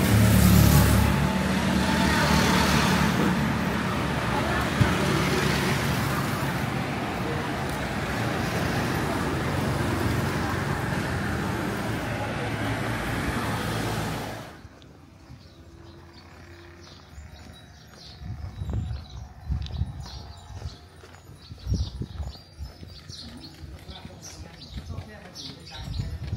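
Steady road traffic noise, loud and even, which cuts off suddenly about two-thirds of the way through to a much quieter street background with scattered light knocks.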